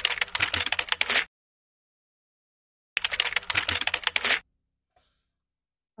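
Keyboard typing sound effect: rapid keystroke clicks in two runs, the first stopping about a second in and the second starting about three seconds in and lasting about a second and a half, as title text is typed out letter by letter.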